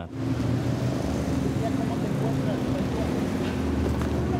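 Engines of an SUV and a minivan running as they creep slowly past at walking pace. A crowd of reporters' voices is mixed faintly with the steady engine noise.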